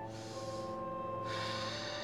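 Soft background music of held notes that change pitch twice, with an audible breath in and out taken during a one-breath hold.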